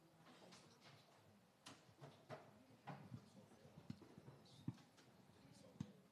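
Near silence in a hearing room, broken by scattered faint knocks and thumps from people settling into chairs and handling things at a crowded conference table. The two loudest thumps come about two-thirds of the way in and just before the end.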